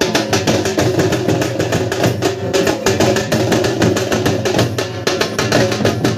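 Procession drumming: steel-shelled dhol drums beaten with sticks in a fast, steady rhythm, with small hand cymbals.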